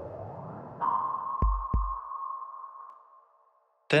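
Synthesized cinematic sound design: a rising whoosh leads into a held electronic tone, with two deep thuds close together about a second and a half in, then the tone fades away.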